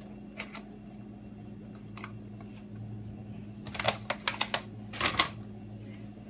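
A few light clicks and taps from a spoon and plastic kitchen containers being handled on a countertop, most of them bunched together in the second half, over a steady low hum.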